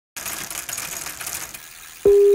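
Rapid, irregular clicking and crackling that starts just after the opening and fades away over about a second and a half.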